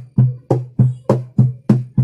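Acoustic guitar strummed in steady down-strokes in a marching rhythm, about three strokes a second, with every other stroke brighter and more accented.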